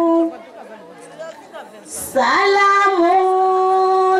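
A woman singing into a microphone, unaccompanied: one long held note ends just after the start. After a short pause with faint chatter and a brief hiss about two seconds in, she starts a new long note that rises into pitch and holds steady.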